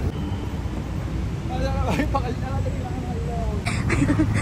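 Steady low rumble of street traffic, with voices talking briefly in the middle and a short rustling burst near the end.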